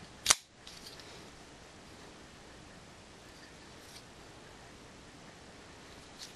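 A single sharp click from a Kershaw Rescue Blur folding knife being handled, about a third of a second in, with a smaller click just after. Otherwise only faint handling noise.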